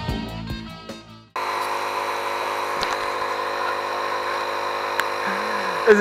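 Rock guitar music fading out over the first second or so, then a sudden cut to a steady machine hum made of several level tones. Near the end a short rising and falling vocal sound.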